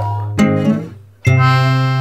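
Background music: a chord dies away, and a new chord is struck about a second and a quarter in and held.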